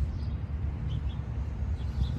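Outdoor background with a rumble of wind buffeting the microphone, and a few faint, brief bird chirps.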